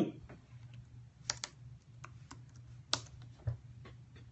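Scattered, irregular keystrokes on a computer keyboard, a handful of light clicks over a low steady hum.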